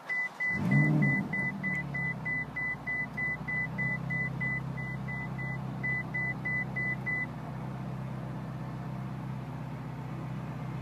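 Ferrari California T's retractable hardtop in operation: a steady low mechanical hum as the roof mechanism runs, with a short, even warning beep about three times a second that stops about seven seconds in.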